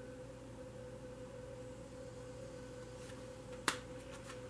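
Quiet room with a faint steady hum, then one sharp click near the end as a tarot card is laid down on the spread.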